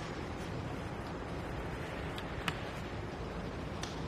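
Faint clicks and taps of a bike rack's strap being undone by hand, a few scattered over a low steady background noise.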